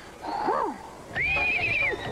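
A cartoon character's voice howling like an animal: a short call that rises and falls, then a long, wavering high howl starting about a second in.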